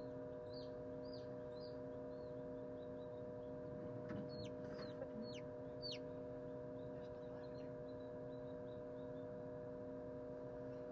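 Lavender Ameraucana chick peeping as it hatches: short, high peeps that fall in pitch, a few in the first two seconds, a louder run of four about four to six seconds in, then faint ones. A steady incubator hum runs beneath.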